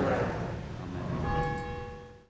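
A bell struck once about a second in, ringing on in several steady tones.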